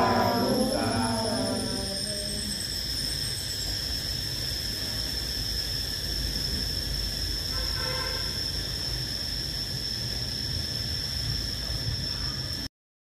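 A group of voices chanting a Vietnamese Buddhist prayer in unison ends a second or two in. After that there is a steady background of low rumble with one continuous high-pitched tone, and a brief faint voice about eight seconds in.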